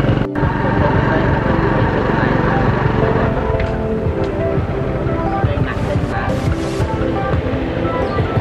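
Music with a melody of held notes, after a brief break in the sound just after the start.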